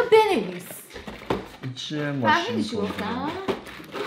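A person's voice, drawn-out and sing-song, with a few brief clicks and rustles from cardboard toy packaging being handled.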